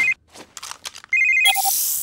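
Ryder's pup-pad (a cartoon handheld communicator) ringing with a steady two-tone electronic ring. The ring stops just after the start, returns about a second in, and gives way to a short lower beep and a brief hiss near the end as the video call connects.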